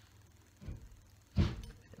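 An old steel Puget-pattern axe head being driven onto its wooden handle: a soft knock, then a louder dull thump as it seats, and a sharp click near the end.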